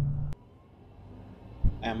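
Low, steady drone inside the Jaecoo J7's cabin as it accelerates in sport mode, cut off abruptly about a third of a second in. After that comes a quieter low road rumble and a single thump just before a man starts speaking.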